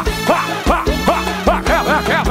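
Live pagodão band music with a driving beat and short pitched notes that swoop up and down several times a second; no singing.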